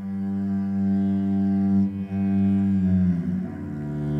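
Cello bowed in long sustained low drone notes, several pitches held together; about three seconds in the notes change and slide lower.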